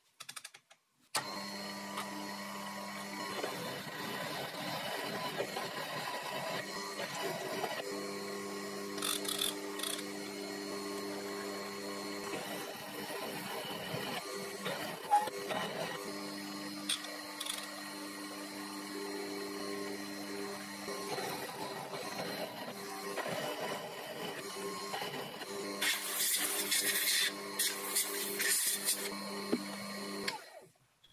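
Small benchtop milling machine's motor running steadily while a countersink drill cuts into steel, starting about a second in, with scraping and the odd click from the cutter and chips. The cutting gets louder and rougher near the end.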